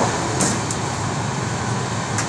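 Passenger train running at speed without stopping, heard from inside the coach as a steady rumble and rush, with a couple of short clicks about half a second in.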